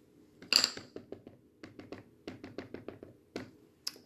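Ink pad dabbed repeatedly onto a rubber stamp: a louder knock about half a second in, then a run of light quick taps, about five a second.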